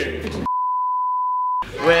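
A single steady electronic test-tone beep lasting about a second, starting and stopping abruptly.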